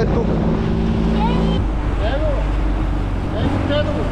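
A boat's motor running with a steady hum that cuts off suddenly about one and a half seconds in, leaving a low rumble, with wind on the microphone and short shouted calls from a man.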